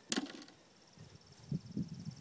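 Insects chirring outdoors: a steady, finely pulsed high trill comes in about half a second in and carries on. A single sharp click just at the start is the loudest sound, and soft low rumbles follow in the second half.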